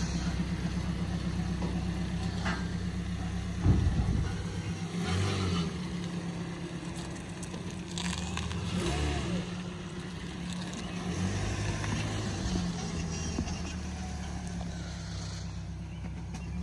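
A 2010 Scion xD being driven down off a car transport's ramps, its engine running steadily, with a loud thump about four seconds in. The engine drone fades twice and returns.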